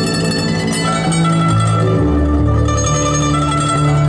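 Guzheng (Chinese zither) played live: a plucked melody of ringing string notes over long held low notes.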